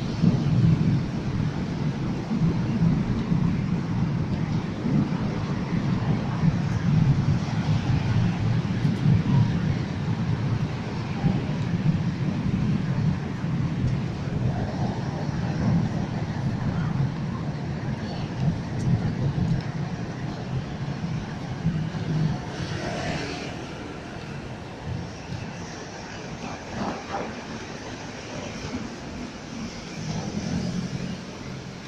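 Train running on an elevated track overhead, a steady low rumble that fades away after about 22 seconds.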